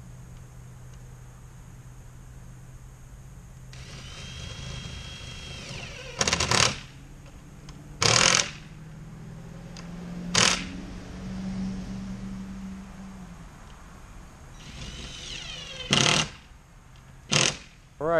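A power drill driving screws into the wooden fence gate to mount its hardware. Its motor whines as it spins up, and it drives in five short loud bursts, over a steady low hum.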